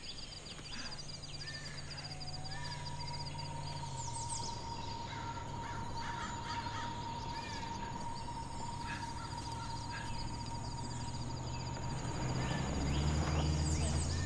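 Suspense-score drone: sustained low tones that shift down about four seconds in and swell louder near the end, with a thin held higher tone and a fast pulsing high line. Short bird chirps sound in the forest ambience.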